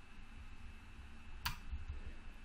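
Quiet room tone with a low hum, and a single computer mouse click about one and a half seconds in.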